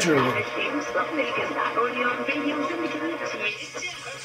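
AM broadcast station on 540 kHz, received through a loop antenna by a software-defined radio and heard over its speaker: a voice with music behind it, under steady tones and hiss from local electrical interference.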